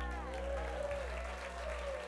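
Audience applause with cheering voices as a song ends.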